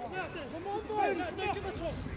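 Several voices shouting and calling at once across an open rugby field while play continues around a ruck; no single voice stands out.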